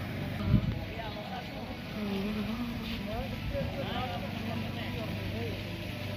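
Indistinct background voices of people nearby over a steady low outdoor rumble, with a brief bump about half a second in.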